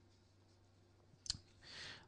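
Near silence, then a single sharp click a little past halfway and a short, soft in-breath just before the voice resumes.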